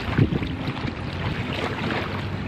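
Swimming-pool water sloshing and lapping as two people wade through it, with a steady wind rumble on the microphone.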